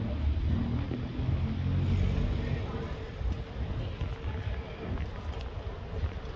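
Low rumble of road traffic on the bridge deck overhead, heaviest in the first two seconds and then easing.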